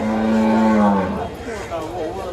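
A cow moos once: a single loud call of about a second, its pitch sagging as it ends.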